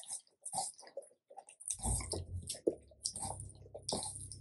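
Black Labrador retriever licking and biting into a mound of raw minced meat: quick, irregular wet mouth smacks and clicks. A low steady rumble joins in at about two seconds and carries on under the smacking.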